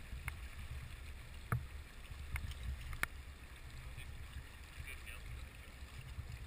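Stream water moving around a camera held at the surface, heard as a steady low rumble, with four sharp clicks or splashes in the first half, the loudest about a second and a half and three seconds in.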